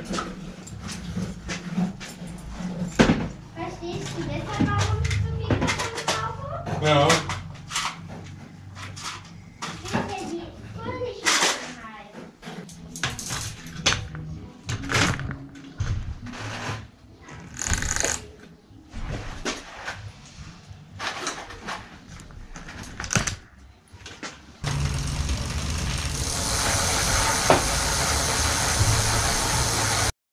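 Bicycle repair handling noises: scattered clicks and knocks of a wheel and tools being handled on a bike in a repair stand, with voices in the background. About five seconds before the end a steady loud hiss starts and runs on until it cuts off suddenly.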